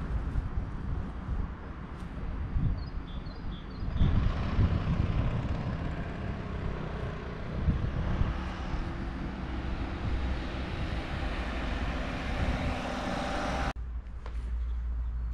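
Outdoor ambience dominated by a low, unsteady rumble, with a few faint high chirps about three seconds in; the sound cuts out for a moment near the end.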